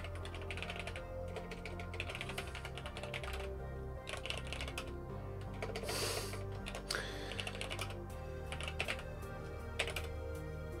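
Computer keyboard typing in quick bursts of keystrokes with short pauses between them, over soft background music.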